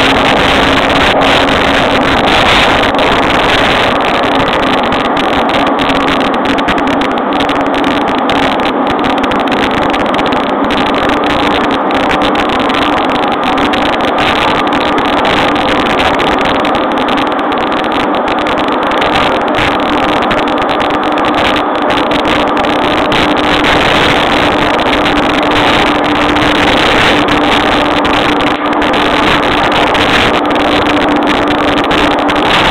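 Running noise inside a JR East E231-series electric train's motor car: a steady rumble of wheels on rail with the traction motors' hum, which drifts slightly higher in pitch over the stretch.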